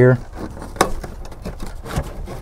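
A glove box liner being pulled out through the dash opening, handled and scraping against its edges, with a couple of light knocks, one under a second in and one near the end.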